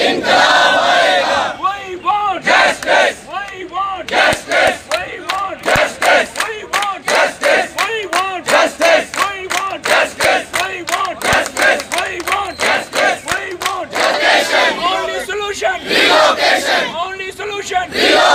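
A crowd of protesters loudly chanting slogans in unison, in a steady rhythm.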